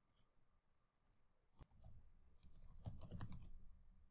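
Faint computer keyboard typing: a quick run of key clicks starting about one and a half seconds in and stopping just before the end.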